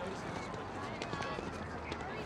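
Schoolyard background: indistinct children's and adults' voices chattering over a steady outdoor hum.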